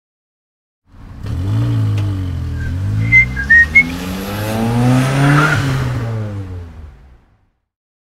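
Car engine revving up and down, starting about a second in and fading out about seven seconds in, with three short high squeals about three seconds in.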